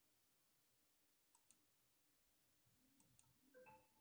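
Near silence, broken by faint computer mouse clicks: two quick pairs of clicks about a second and a half apart.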